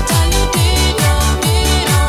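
Italodance track: a four-on-the-floor electronic kick drum, a little over two beats a second, under sustained synth lines.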